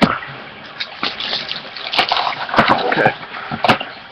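Plastic trading-card pack wrapper and cards being handled: an uneven crinkling and rustling with many small crackles and clicks.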